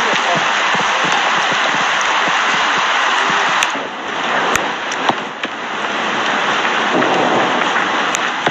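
Steady heavy rain falling and splashing on a wet running track. A few sharp clicks come through about halfway in.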